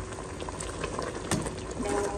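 A pot of bamboo-shoot curry boiling and bubbling, with a metal ladle stirring through the vegetables; one sharper clink about two-thirds of the way through.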